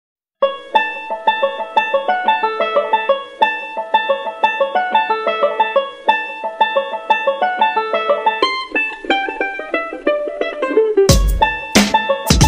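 Background music: a quick melody of short plucked-string notes starting about half a second in, joined near the end by heavy drum hits.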